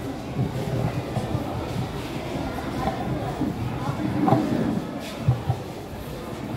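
Indistinct murmur of background voices in a hall, with rustling and handling noise as crumpled tissue paper is pulled out of a glass and unfolded close to a handheld microphone.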